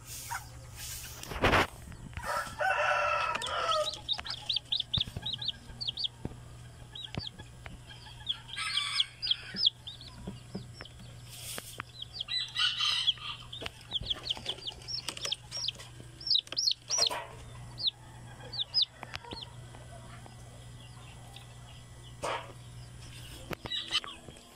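Young chicks peeping in a brooder: runs of short, high chirps through the whole stretch. A rooster crows in the background about two seconds in, and other adult chickens call a few times.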